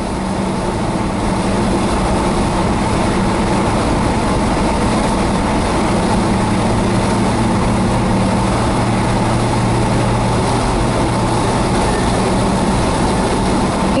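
Steady engine and road noise heard inside a vehicle cabin while driving at highway speed, with a low hum that grows stronger through the middle.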